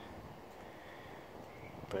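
Quiet outdoor background: a faint, steady hiss of ambient noise with no distinct event.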